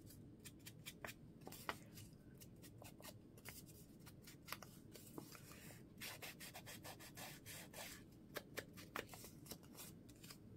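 Faint rubbing and handling of paper at a craft table, with scattered small clicks and taps, strongest a little over halfway through.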